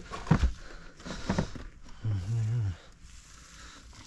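Blue plastic crate of blueberries pushed into a car boot: a sharp knock about a third of a second in, then rustling as hands move over the berries. A man's voice makes a brief steady sound about two seconds in.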